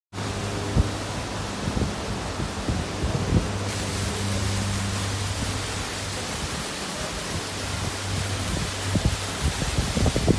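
Steady rushing noise of water splashing from fountain spouts into a lagoon, mixed with wind on the microphone, over a low steady hum; the hiss turns brighter a few seconds in.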